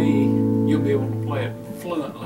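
Orange Gretsch hollow-body electric guitar letting a chord ring on, the notes dying away about a second and a half in.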